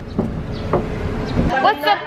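Low rumble of a car's cabin with a few faint knocks, then women's voices chattering from about one and a half seconds in.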